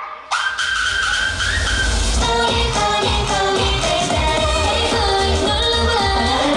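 K-pop girl-group dance track with female singing. After a brief dip at the start, a high held note comes in, and about two seconds in the full beat with heavy bass returns under the vocals.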